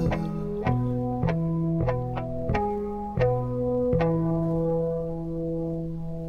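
Electric guitar in a 1982 heavy metal recording, picking a slow line of about eight single notes over low held notes, then letting a chord ring out from about four seconds in.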